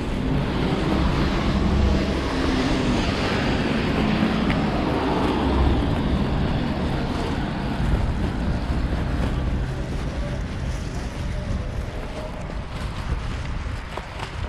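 Street traffic noise: car tyres hissing on a wet road, with wind buffeting the microphone in uneven low rumbles. It is louder in the first half and eases toward the end.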